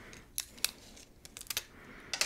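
Printed paper sheets and photos handled and shuffled in the lap, giving a few sharp, crisp paper clicks and snaps, with a small cluster of them in the second half.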